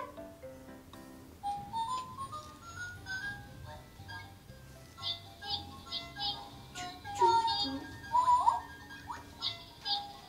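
Cooking Kongsuni toy rice cooker playing its electronic children's tune after being switched on to 'cook'. It opens with a run of notes climbing step by step, followed by high chiming notes.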